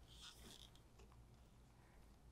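Near silence: room tone, with a few faint soft clicks in the first second as plastic paint cups are handled.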